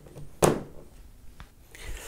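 A USB wall charger's three-pin plug pushed into a mains extension socket: one sharp clunk about half a second in as it seats, then a faint tick.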